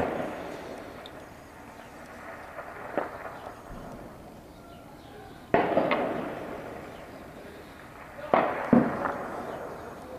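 Distant weapons fire echoing across a built-up area: a faint report about three seconds in, a louder one midway, and two more close together near the end, each trailing off in a long echo.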